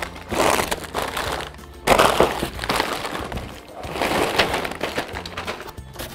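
Plastic snack bags crinkling and rustling in a few noisy swells as a cardboard box full of them is tipped out onto a pile.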